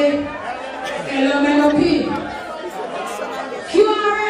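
Voices and chatter in a large hall, with one voice over a microphone standing out.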